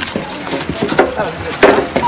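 A few irregular knocks and footfalls as a group walks onto a footbridge, with voices in the background.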